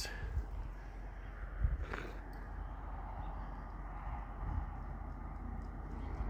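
Outdoor wind noise on the microphone: a steady low rumble with an even hiss. One short sharper sound comes about two seconds in.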